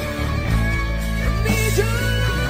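Recorded rock music: an instrumental passage with guitar over held bass notes, the lead line sliding between notes.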